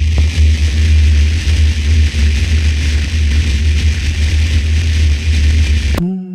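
Loud electrical hum with crackling hiss from a jack cable being plugged into an electric ukulele's amplified input, starting suddenly; the ungrounded plug makes the buzz and the contact noise.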